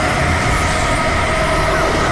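Anime-trailer energy-blast sound effect: a loud, steady rumble with a held tone over it and a faint rising whistle near the end.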